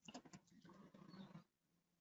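Faint computer keyboard typing: a few soft key clicks during the first second and a half, then near silence.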